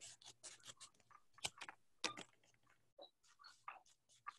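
Scissors cutting construction paper into strips: a run of faint, irregular snips and paper crinkles, the sharpest about one and a half and two seconds in.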